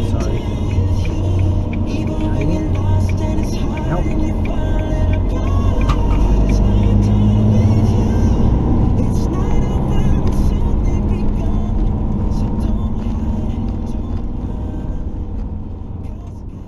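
A car driving, heard from inside the cabin as a steady low engine and road rumble, with music playing over it.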